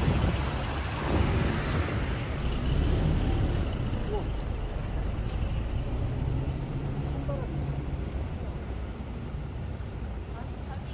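City road traffic heard from the sidewalk: vehicle engines running with a low steady hum and tyre noise, loudest in the first couple of seconds as vehicles pass and easing off toward the end.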